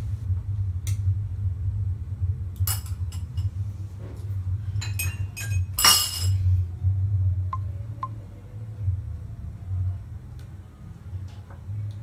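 A series of light clicks and clinks of small hard objects being handled, about eight in the first six seconds, the loudest near the middle with a brief ring. A low rumble runs underneath.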